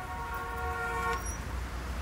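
A vehicle horn sounds once for about a second, a steady multi-toned honk, over the low rumble of street traffic.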